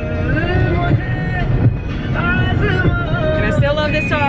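A song with a singing voice playing over the steady low rumble of road and engine noise inside a moving car's cabin.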